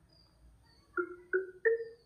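Android TalkBack screen reader earcons from the Lava Blaze 2 phone's speaker: three short beeps about a second in, each a little higher than the last, signalling that the Settings list is scrolling.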